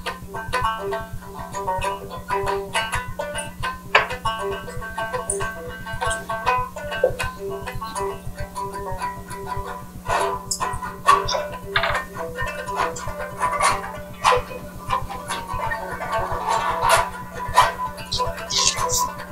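Banjo music: a banjo picked in quick, busy runs with a band behind it, played back over a room's speakers. A steady low electrical hum runs underneath.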